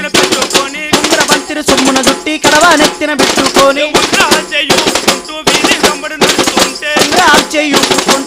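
Live folk drumming on frame drums, fast and loud with dense rapid strokes, with a wavering melody line carried over the beat.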